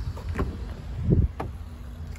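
Car door being opened on an Alfa Romeo Giulia: the handle is pulled and the latch releases, with two sharp clicks about a second apart and a soft low thud between them.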